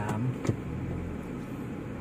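Steady low road and engine noise inside a moving car's cabin, with a single click about half a second in.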